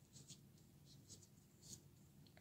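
Faint, short scratchy rustles, several in a row, as a long steel needle is pushed through a crocheted yarn ball and the ball is worked along it.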